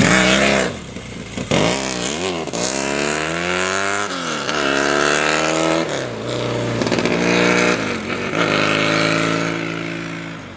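Yamaha XS650 motorcycle's 650 cc parallel-twin engine accelerating hard, passing close at the start, then its revs climbing and dropping several times before settling into a steadier run near the end.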